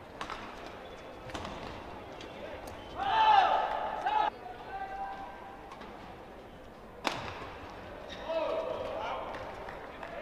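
Badminton rackets striking a shuttlecock in a doubles rally: sharp, isolated hits, the loudest about seven seconds in. Shouting breaks out twice, about three seconds in and again near the end.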